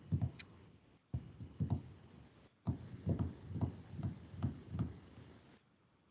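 Muffled, choppy audio from an open video-call microphone: low thumps and sharp clicks in three stretches that cut in and out abruptly, a connection that is not coming through properly.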